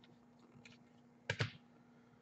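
Bowman baseball cards being flipped through and set down by hand: a few light clicks, the loudest a quick pair about a second and a half in, over a faint steady hum.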